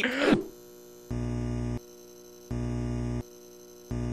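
Transition jingle under a title card: a held chord with a strong bass sounds three times, each about two-thirds of a second long with gaps of the same length, over a faint steady tone. A brief laugh trails off at the very start.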